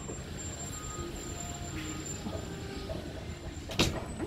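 Steady low rumble of outdoor background noise, with a sharp click near the end.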